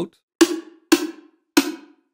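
Homemade tom drum sample played three times from a software sampler: each hit is a short pitched thump with a hissy tail that dies away quickly. It is the re-pitched tonal body of a homemade snare sample, auditioned as its note is changed.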